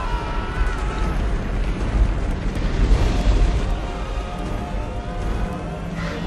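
The continuous low rumble of a stampeding herd's hooves, mixed with dramatic orchestral film music.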